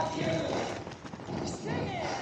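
Footfalls of runners' shoes slapping on asphalt as a group of road-race runners passes close by, with voices over them.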